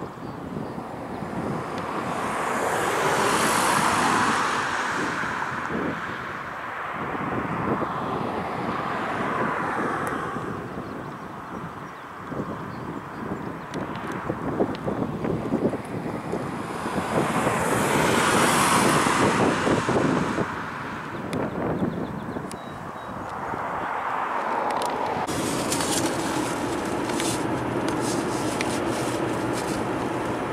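Vehicles passing at highway speed, each rising and fading over a few seconds; the loudest pass-bys come a few seconds in and past the middle. In the last few seconds it turns to the steadier road noise of a car being driven, heard from inside.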